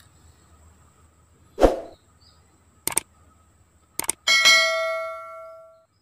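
A dull knock, then a few light metallic clicks, then a strike that sets the steel blade of a handmade parang ringing with a clear, several-toned ring that dies away over about a second and a half.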